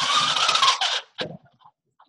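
Pull-down projection screen rolling up on its spring roller: a scraping, rattling whir with a faint wavering whine for about a second, then a single click as it stops.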